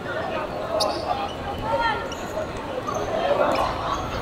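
Players shouting calls to each other during a five-a-side football attack, with the thud of the ball being kicked on the hard court. The sharpest kick comes about a second in and a fainter one near the end.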